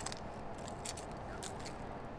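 A few light clicks and rustles over quiet, steady background noise.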